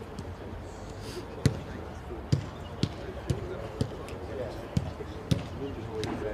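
A football being kicked back and forth in quick passes: a run of sharp thuds about twice a second, starting about a second and a half in.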